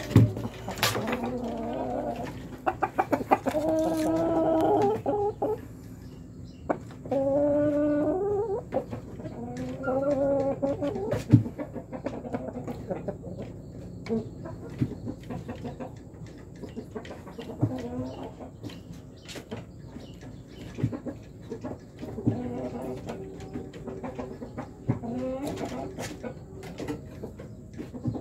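Chickens clucking and calling in several drawn-out calls of a second or two each, with scattered sharp clicks and knocks throughout.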